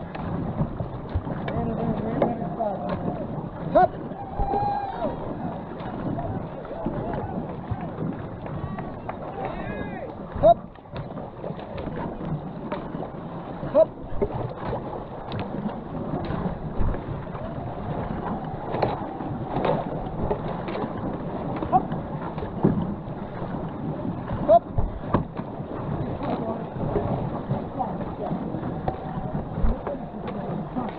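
Racing canoe being paddled hard down a shallow river: steady rush and splash of water along the hull and paddle strokes, with occasional sharp knocks and indistinct voices of nearby paddlers.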